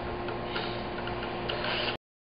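A few light ticks and blips from a three-piece airlock on a glass carboy of just-degassed Chardonnay, as leftover CO2 bubbles out through it, over a steady background hum. The sound cuts off just before the end.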